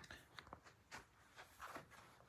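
Near silence: room tone with a few faint, scattered clicks and rustles.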